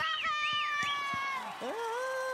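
Very high sung notes in whistle register, held for about a second and a half and then falling away. A lower sung note takes over near the end.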